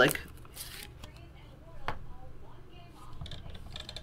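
Trading cards being handled on a tabletop: soft rustling and sliding, with one sharp click about two seconds in.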